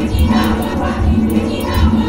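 Live electronic music played from a laptop and electronics: a deep pulsing bass, quick high ticks and a dense layer of massed, crowd-like voices.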